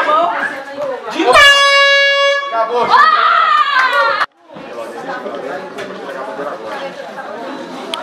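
An air horn sounds once for a little over a second, one steady tone, marking the end of the bout, over crowd chatter and shouting. The sound cuts out abruptly a few seconds later, and quieter crowd chatter carries on.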